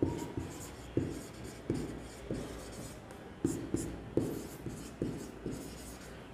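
Marker pen writing on a whiteboard: a string of about ten short strokes and taps as words are written out.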